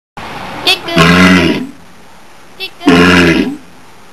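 A walrus giving two loud, low calls about two seconds apart, each about half a second long and led by a brief higher-pitched sound.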